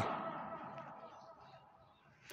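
A man's amplified voice echoing through a loudspeaker system in a reverberant hall, dying away over about a second after a spoken word, then faint room tone.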